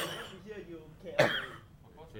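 A man coughing twice, a little over a second apart; the first cough, at the very start, is the louder.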